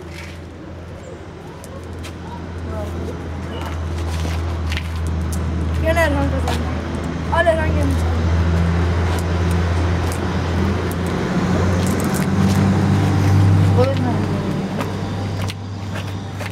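A motor vehicle's engine running nearby, a steady low hum that swells over several seconds and eases off near the end, with brief children's voices over it.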